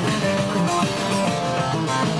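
A band playing a lively Turkish folk dance tune (oyun havası), a busy melody of quick notes running without a break.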